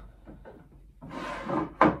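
A wooden board scraping as it slides over a plywood bench top by a woodworking vise, then a sharp wooden knock near the end.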